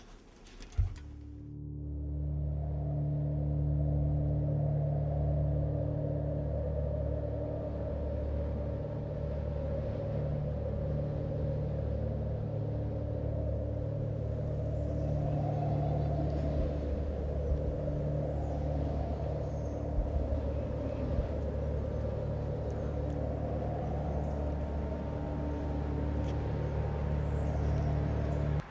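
A low, steady droning rumble of held low notes swells in over the first couple of seconds and holds evenly, with a single sharp click about a second in.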